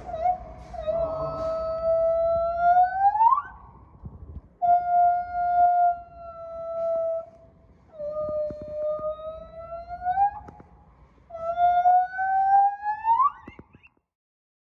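White-handed gibbon singing: four long, steady hoots, each held for two to three seconds and sliding up in pitch at the end, with short pauses between them.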